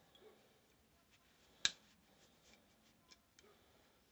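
Quiet handling of a Heritage Barkeep single-action revolver frame as it is wiped down with a cloth rag: faint rubbing and a few light ticks, with one sharp click about a second and a half in.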